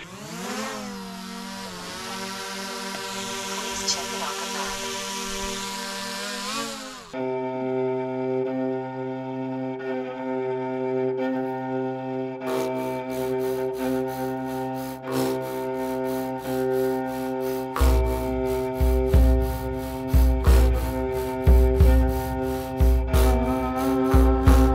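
A small camera drone's motors spinning up and hovering with a buzzing whine, which cuts off abruptly about seven seconds in. Background music takes over: sustained chords, then percussion joining around twelve seconds in and a heavy bass beat from about eighteen seconds.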